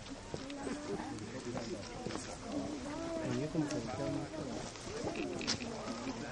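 Indistinct talk of several people, with voices overlapping, and a few scattered sharp clicks.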